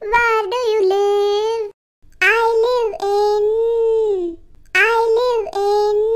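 A child's voice singing three short phrases with a gap between each, every phrase ending on a long held note.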